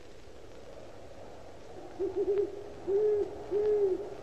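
An owl hooting: a quick run of three short hoots about two seconds in, then two longer hoots at the same pitch.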